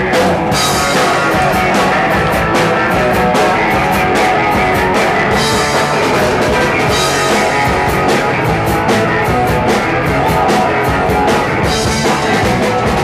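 A live punk rock band playing: distorted electric guitar and a drum kit keeping a fast, driving beat, loud and continuous.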